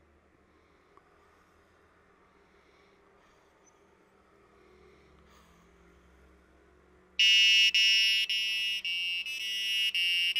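Arduino-driven buzzer playing a short jingle of high-pitched beeping notes, starting suddenly about seven seconds in after near silence. It sounds because the DHT sensor's temperature reading has reached 29, the condition coded to trigger the jingle.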